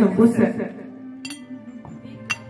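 A man's voice speaks a word, then a single sharp, short clink about a second later, over a steady low background drone of music.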